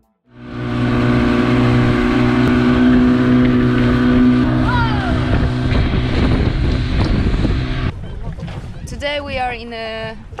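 Outboard motor of an inflatable dinghy running steadily at speed across open water, with wind rushing on the microphone. About eight seconds in the engine sound drops away and a voice speaks.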